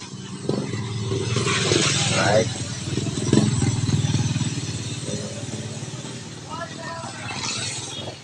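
A small motorcycle engine passing on the road, growing louder to a peak about three to four seconds in and then fading away.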